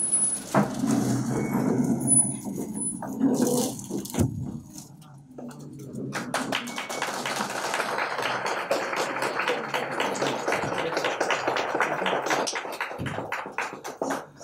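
Indistinct voices and shuffling, then from about six seconds in an audience applauds with fast, irregular clapping.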